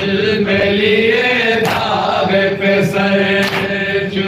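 Men's voices chanting a Shia noha, a mourning lament, together in long held lines, with sharp chest-beating slaps (matam) about every two seconds.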